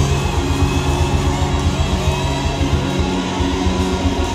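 Live band playing: guitar chords held over drums and bass, with a steady, fast pulse in the low end.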